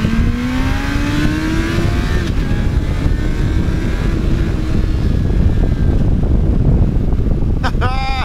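2001 Yamaha FZ1's inline-four engine accelerating through its stock muffler, its pitch rising over the first two seconds, then holding steady at cruise. Heavy wind rush on the microphone throughout.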